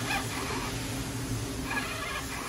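DIY emergency ventilator running: a steady low motor hum with short, squeaky whining tones from its mechanism, once just after the start and again near the end.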